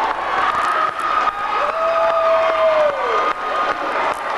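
Crowd cheering and clapping in a gym after a last-second basket, with one long shout held from under halfway through to near the end, falling in pitch as it stops.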